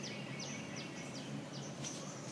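Birds calling: a run of short, high chirps, each sweeping downward, about three a second, over a steady low background hum.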